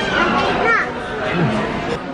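Speech: voices in a busy room, children's among them, with short calls that rise and fall in pitch.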